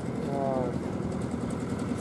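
A machine's engine idling steadily, a low even drone with no change in speed. A brief vocal sound comes over it about half a second in.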